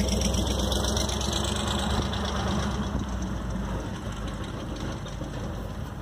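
Pickup truck engine running as the truck drives away over a railroad crossing, a steady low hum that fades after the first couple of seconds.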